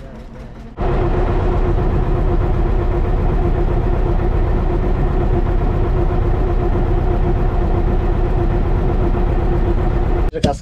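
An engine cuts in abruptly about a second in and runs steadily, a constant drone with a low rumble.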